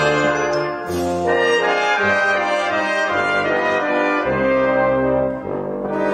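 Brass music: sustained chords held for about a second each before moving to the next.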